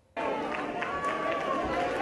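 A large crowd cheering and shouting, starting suddenly after a brief silence, with many voices overlapping and some claps.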